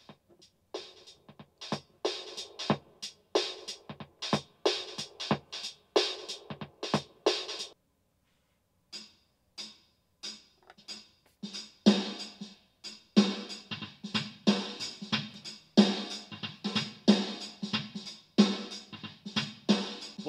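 BeatBuddy drum pedal playing its Shuffle Funk beat on the Rock drum kit at 92 BPM through a small, older Roland Cube amp, with little low end. The beat breaks off for about a second partway through, then comes back fuller, with heavier kick and snare hits.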